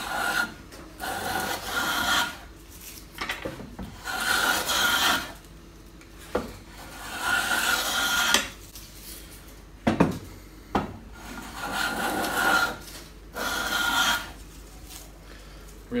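Restored bench hand plane shaving a wooden board: about six strokes, each a second or so of rasping hiss, with a few sharp knocks between strokes. The sharpened iron is cutting cleanly and leaving the board nice and smooth.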